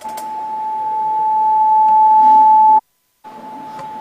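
Microphone feedback through a church PA system: one steady high-pitched whistle that grows steadily louder, cuts off abruptly about three-quarters of the way through, and returns fainter after a short gap of silence.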